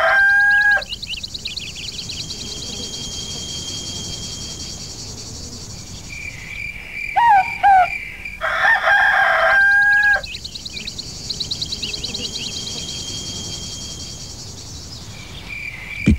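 A rooster crowing twice, each crow held and then dropping at the end: the first finishes in the first second and the second comes about nine seconds in. Between the crows a steady high-pitched buzzing runs on, with a few short rising-and-falling chirps.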